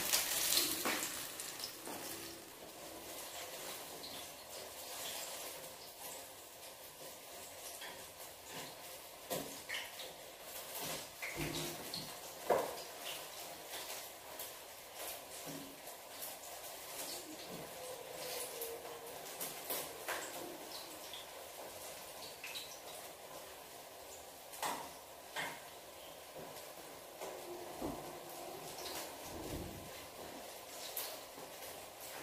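Battered banana slices deep-frying in oil in a wok, a faint steady sizzle, with scattered clicks and knocks as chopsticks turn them in the pan.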